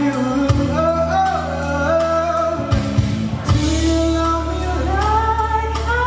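A man singing the lead of a pop ballad with a live band, guitar and deep held notes under the voice.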